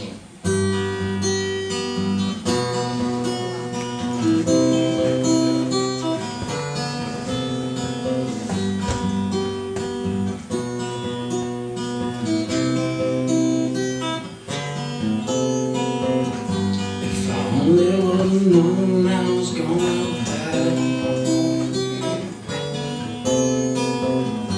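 Acoustic guitar playing the opening of a song, a run of chords that starts about half a second in and carries on steadily.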